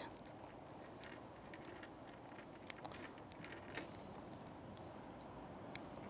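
Faint scattered clicks and rustles of hands handling a pilchard bait on a two-hook rig wrapped in bait elastic, over a steady low hiss.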